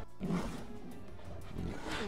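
Background music from a TV episode's soundtrack, with a large creature's low growl, heard through the show's audio shortly after the start and again near the end.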